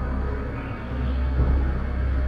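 Dark, low droning horror-film score, with a dull low thud about a second and a half in.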